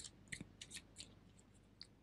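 Near silence with about eight faint, short clicks scattered through it.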